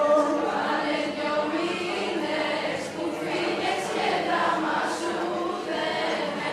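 A group of voices singing a song together, at a steady level.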